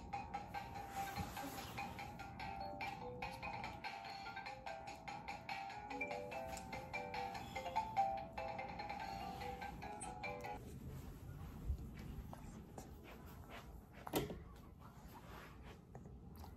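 A baby toy's electronic tune, a simple melody of single plinking notes, plays and then stops about ten seconds in. After it, soft handling rustles and a single knock near the end.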